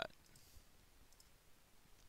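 A few faint, scattered clicks of a computer mouse over near-silent room tone.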